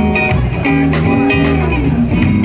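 A live band playing an instrumental passage of a groove song, with guitar out front over bass and a steady beat of sharp hits.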